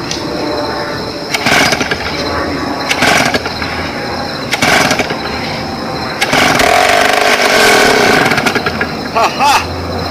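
Two-stroke chainsaw being pull-started after long storage: a series of short bursts as the starter cord is pulled, with a longer run of about two seconds near the middle as the engine tries to catch, then dies.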